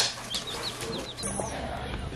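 Baby chicks a few days old peeping in a brooder: several quick, high, falling peeps in the first second or so. A steady low hum takes over for the last part.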